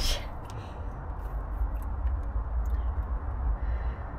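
Faint small clicks and rustles of hands working a rubber spark plug boot and HT lead over a steady low rumble.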